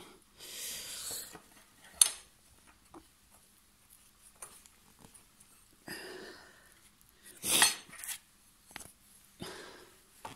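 Handling noise from a heavy treadmill motor being shifted on its mount: short scrapes and rubbing, a sharp metallic click about two seconds in, and a louder clatter of knocks a little past the middle.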